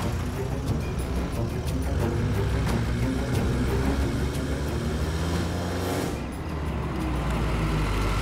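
SUV engines driving off under a dramatic background music score, with a loud rushing sweep about six seconds in.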